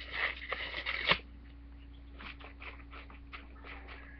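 Paper rustling and crinkling under a hand, busiest in the first second and ending in a sharp crackle, then a few light taps and rustles over a faint steady hum.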